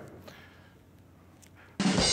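Near silence for most of it, then near the end a recorded drum roll sound effect starts suddenly, with snare and cymbal.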